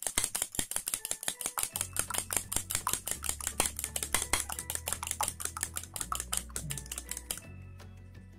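Fork beating eggs in a bowl: rapid, regular clicks of the fork against the bowl, which stop near the end. Background music with low held notes comes in about two seconds in.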